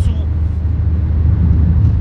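Steady low rumble of road and engine noise heard inside the cabin of a car being driven, with a light hiss above it.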